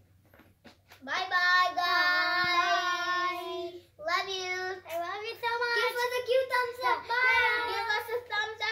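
A child singing: a long held note that starts about a second in, then after a brief break a second phrase with the pitch moving up and down.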